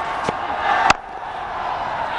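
Steady stadium crowd noise, with one sharp crack of a cricket bat hitting the ball a little under a second in.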